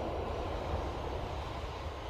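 Steady low rumble of a jet airliner's engines.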